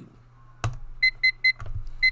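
A thump, then three short electronic beeps about a quarter second apart from a home security alarm keypad being keyed in.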